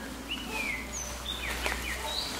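Birds calling outdoors: several short whistled notes, each sliding down in pitch, over steady background ambience, with a brief rustle about one and a half seconds in.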